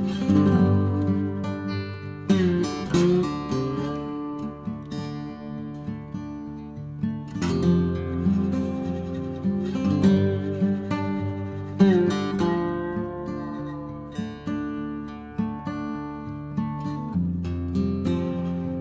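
Background music: an acoustic guitar playing, with strummed chords and plucked notes.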